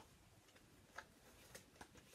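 Near silence, with a few faint clicks of paper flashcards being handled and shuffled: one about a second in and another near the end.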